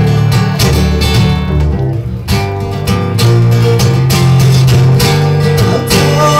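Acoustic guitars strumming chords in a steady rhythm, an instrumental passage of a folk song played live without singing.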